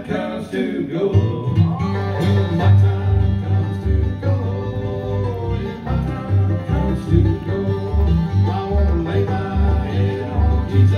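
Bluegrass band playing live, with banjo, fiddle, guitar, mandolin and upright bass; the bass comes in about a second in and the full band carries on.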